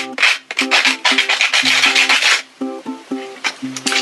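Sandpaper rubbing on the ends of cut bamboo pieces in quick back-and-forth strokes, smoothing them so no splinters stick out. The strokes stop a little over halfway through, over background music with plucked-string notes.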